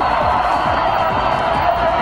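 Music with stadium crowd noise underneath, at a steady level.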